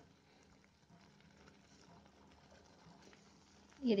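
Very faint bubbling of thick guava and sugar syrup boiling in a steel pot, a syrup that is starting to thicken and draw strings. A woman's voice begins near the end.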